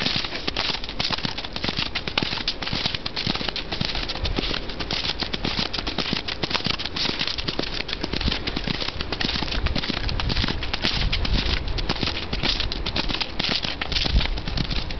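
Continuous rattling clatter mixed with the hoofbeats of a Fjord horse trotting on a grass verge.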